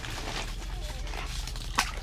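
Golden retriever giving a short, wavering whine, with a single sharp knock near the end.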